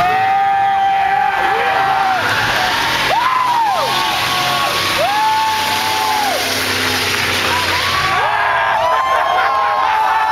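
Pickup truck doing a burnout: the spinning rear tyres squeal in a string of screeches about a second long each, over the engine running hard, with a crowd cheering.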